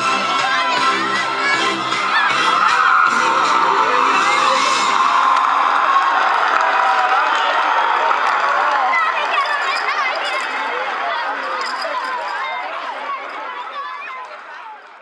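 A crowd of young children shouting and cheering, many voices overlapping, with background music that stops about five seconds in. The noise fades down near the end.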